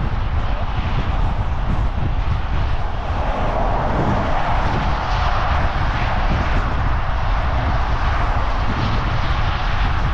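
Wind buffeting the microphone of a moving bicycle's camera, a constant low rumble. A rushing noise swells up in the middle and then eases.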